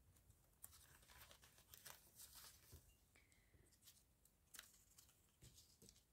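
Near silence with a few faint rustles and light ticks of paper card being handled on a cutting mat.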